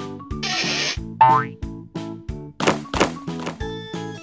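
Cartoon sound effects over upbeat children's background music with a steady beat. About half a second in there is a short hissing swish, followed by a rising cartoon 'boing'.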